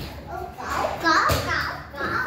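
A young child's voice calling out and babbling while playing, with a short sharp knock a little past the middle.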